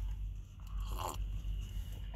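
A man sipping coffee from a paper cup: a short, faint sip about a second in, over a low steady hum.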